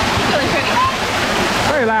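Loud, steady rush of a rock waterfall pouring into a pool, a dense hiss of falling and splashing water that cuts off abruptly near the end.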